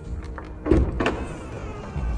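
Dongfeng M-Hero 917 driver's door being opened by its flush handle: two sharp latch clicks about a second in, then a faint electric motor whir.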